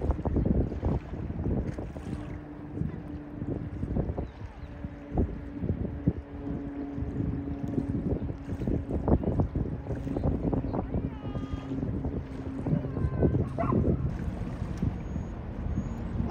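Wind buffeting the microphone in uneven gusts, with a long steady low tone sounding from a few seconds in until a few seconds before the end.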